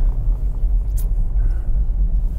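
Mercedes 250TD diesel car driving, heard from inside the cabin: a steady low rumble of engine and road noise, with one sharp click about halfway through.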